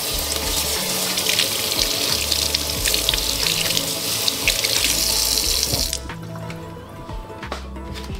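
Kitchen faucet running, its water splashing over lettuce leaves and a cauliflower floret into a stainless steel sink as they are rinsed; the water sound stops abruptly about six seconds in. Background music plays underneath.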